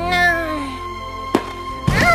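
A high-pitched cartoon character's voice gives one short, gliding call, followed by two sharp knocks about half a second apart in the second half, over steady background music.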